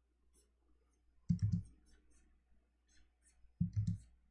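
Two short clusters of clicks, about a second in and near the end, from computer input devices (keyboard, mouse or pen tablet) being worked at a desk.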